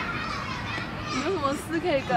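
A woman speaking Mandarin, her voice starting about halfway through.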